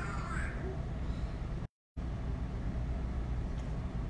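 Steady low room rumble from the microphone in a pause in a woman's talk, with the end of her word at the start. Just under two seconds in, the sound cuts out completely for about a quarter of a second, then comes back.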